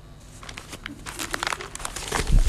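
Newspaper pages rustling and crinkling as the paper is handled and folded up: a run of papery crackles that starts about half a second in and grows denser and louder toward the end.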